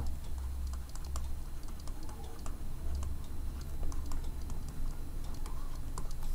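Faint irregular ticks and light scratches of a stylus writing on a tablet, over a low steady hum.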